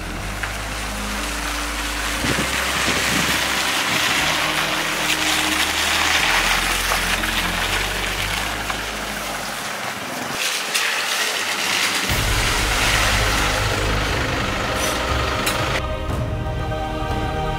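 Toyota Hilux diesel pickup driving slowly along a dirt road and pulling in, its engine and tyre noise mixed with background music that has a low, stepping bass line.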